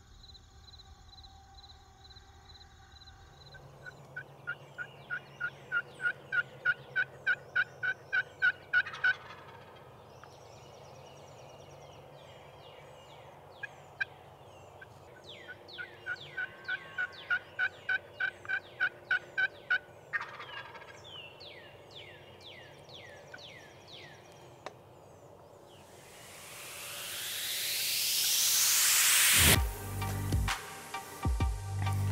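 Wild turkey calling: two runs of evenly spaced yelps, about four a second, the first growing louder, with a short burst of calls between them. It starts after a few seconds of a faint steady high trill. Near the end a loud rising whoosh swells up, the loudest sound here.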